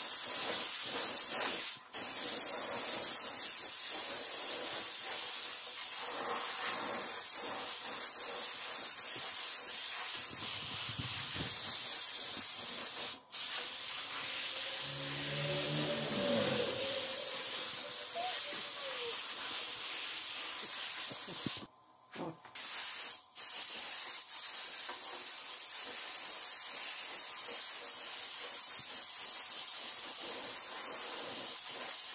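Gravity-feed spray gun spraying paint with compressed air: a steady hiss, with a few brief breaks in the spray.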